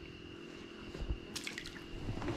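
A few light water drips and small ticks, most of them about a second in, over a faint steady hum.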